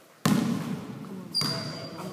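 A basketball bouncing twice on a sports-hall floor, once about a quarter-second in and again about a second and a half in, each hit echoing in the hall. A short high squeak follows the second bounce.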